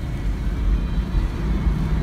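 A steady low rumble inside the cabin of a moving 1996 Chevrolet Impala SS at low speed: its 5.7-litre (350) V8 running, with road noise.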